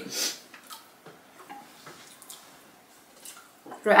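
Wooden chopsticks tapping and scraping lightly against ceramic bowls and plates, a few soft scattered clicks.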